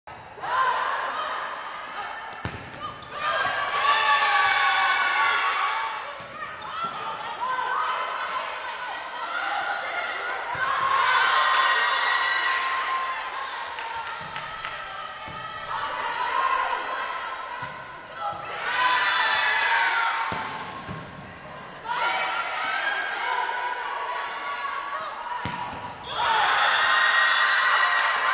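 Indoor volleyball rallies: sharp knocks of the ball being struck and hitting the hard court, with players' shouts and cheers rising after points every few seconds.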